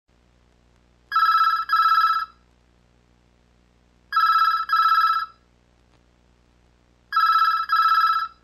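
Push-button desk telephone ringing: three double rings, about three seconds apart, each ring a short steady tone.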